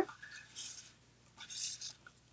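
Paper and cardstock rustling and sliding under the hands as card layers are handled, in two short, soft scrapes about half a second and a second and a half in.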